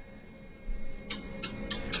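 Relay computer panel clicking: a quick run of about six sharp clicks in the second half, heard faintly over a low steady hum.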